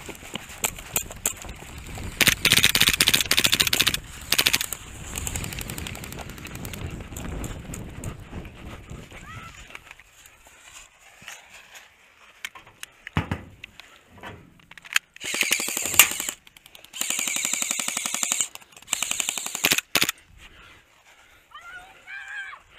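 Airsoft guns firing on full-auto in rapid clattering bursts: one long burst a couple of seconds in, then several shorter bursts in the second half. A player is running during the first half.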